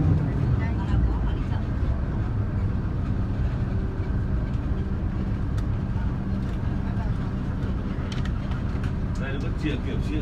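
Engine of a safari tour vehicle running steadily as it drives slowly, a low, even hum with road noise, heard from inside the cabin.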